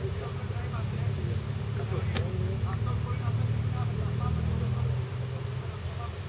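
A steady low rumble that swells through the middle and eases about five seconds in, with faint distant men's voices calling over it and one sharp knock about two seconds in.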